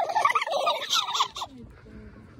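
Several young people's voices shrieking and whooping 'hoit!' together in an overlapping, warbling jumble, cut off abruptly about a second and a half in.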